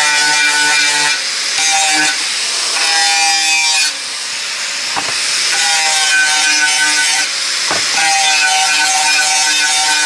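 Angle grinder with a sanding disc running against a fibreglass pipe, a high motor whine over a gritty abrading hiss, abrading the pipe's outer surface to clean it for a butt-and-strap joint. The whine drops away briefly a few times and the sound is quieter for a second or so near the middle.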